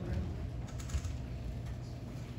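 Low, steady room hum with a few faint clicks and soft knocks, typical of movement and handling near a microphone.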